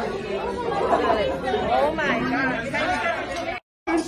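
Several voices talking over one another in a crowded room. The sound cuts out completely for a moment just before the end.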